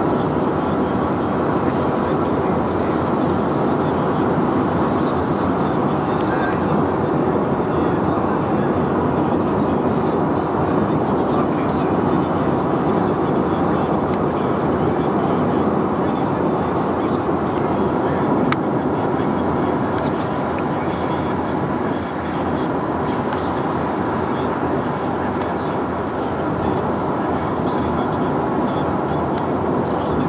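Steady road and engine noise inside a car's cabin while driving at motorway speed.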